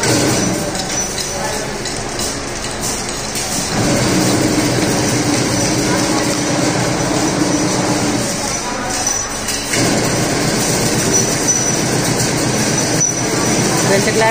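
Galvanised chain-link wire mesh clinking and scraping on a concrete floor as it is handled, over a steady mechanical din.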